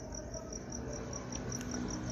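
Insect chirping steadily, a high-pitched pulse repeating about six times a second.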